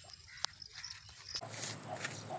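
A dog's faint vocal sounds, with a single sharp click about half a second in.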